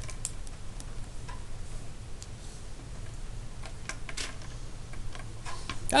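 Ballpoint pen on paper: faint scratching and light ticks as a word is finished, then a few scattered small clicks and taps over a steady low hum.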